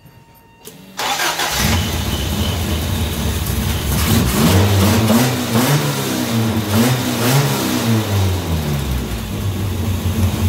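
1982 Toyota Corolla TE72's four-cylinder engine, on a newly fitted Weber carburetor, cranks and catches about a second in, then runs with its revs rising and falling unevenly for several seconds before settling into a steadier idle.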